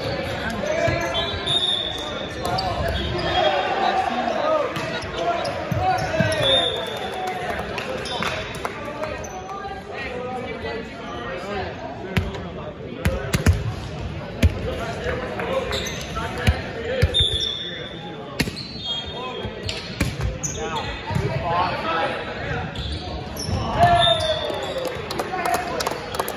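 Volleyball being bounced on a hardwood gym floor and hit, in sharp single knocks, amid players' voices and calls, all echoing in a large gymnasium. A few brief high squeaks come through now and then.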